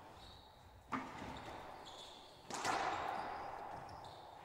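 Racquetball shots echoing in an enclosed court: a sharp pop of the ball about a second in, then a louder smack about two and a half seconds in that rings on through the hall.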